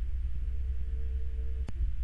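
A low steady hum, with a faint higher steady tone above it, and one sharp click about one and a half seconds in.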